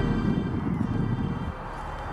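Wind buffeting an outdoor microphone: an uneven low rumble with no other clear sound.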